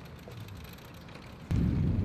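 Quiet street background, then about one and a half seconds in a sudden loud low rumble of wind buffeting the microphone while riding a bicycle.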